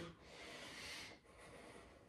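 Faint breathing of a man exerting himself, a long breath out through the nose or mouth, then a softer second breath about a second in.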